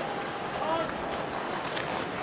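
Ice hockey arena crowd murmur, an even wash of many voices, with one voice rising briefly about half a second in.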